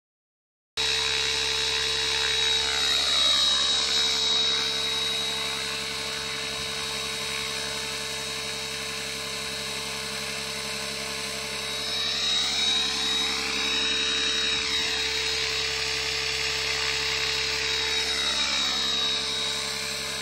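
Align T-Rex 700 radio-controlled helicopter hovering hands-off under GPS position hold: a steady high whine from its drive over the rotor hum. The sound starts about a second in and swells and fades twice as the helicopter drifts about.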